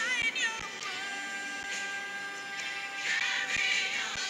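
A song sung with musical accompaniment: a wavering vocal line at the start, then a long held note, growing fuller and louder about three seconds in.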